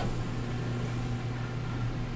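Steady machine hum and air noise inside the gondola of a human centrifuge, with a constant low drone, as the centrifuge keeps turning at about 2 G after the peak of the run.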